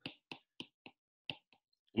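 Stylus tapping on a tablet's glass screen, about seven light, separate clicks in two seconds, as dots are tapped out one by one.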